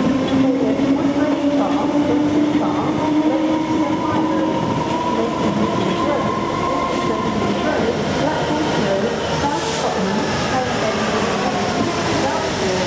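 Class 66 diesel-electric locomotive with its EMD two-stroke diesel engine running, drawing a freight train of tank wagons slowly past at close range. Steady engine tones dip slightly in pitch near the end as the locomotive draws level.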